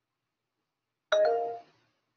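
A short electronic chime, two steady tones sounding together, starts suddenly about a second in and fades out within about half a second.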